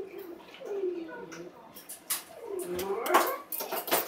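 Shiba Inu making drawn-out whining, talk-like calls that slide in pitch: one falls about a second in, and one rises near the end. A few sharp clicks come in the last two seconds.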